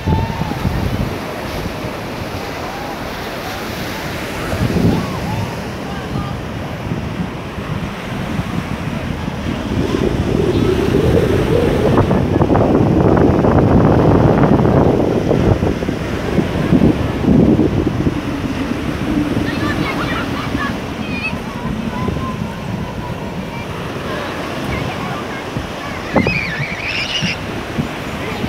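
Surf breaking on a sandy beach: a steady wash of waves that swells to its loudest about halfway through as a wave breaks and rolls up the shore.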